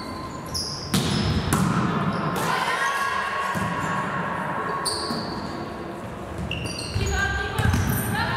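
Volleyball rally in a gym hall: sharp hits on the ball and short high squeaks of shoes on the wooden floor, echoing in the hall. One hit lands about a second in, and a cluster of louder impacts comes near the end, as a player dives to the floor.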